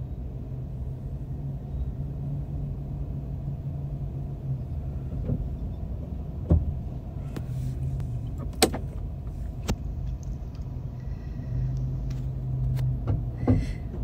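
A car engine idling as a steady low hum, with a few scattered sharp clicks and knocks.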